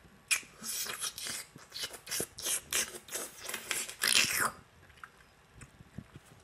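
Someone chewing a bite of a frozen chocolate fudge bar close to the microphone: a string of irregular short mouth noises that stops about four and a half seconds in.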